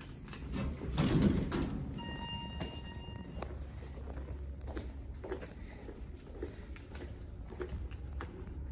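A thump about a second in, then a steady electronic elevator beep lasting about a second and a half that cuts off abruptly. Footsteps on a hard floor follow, about one a second, over a low steady hum.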